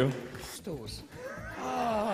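Voices in a hall after an announcement: faint talk, then a longer drawn-out vocal call that rises and falls in pitch near the end.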